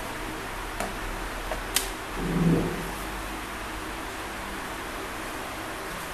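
Steady background hiss with a few light clicks and knocks of a plastic laptop being handled and set down, one sharper click about two seconds in.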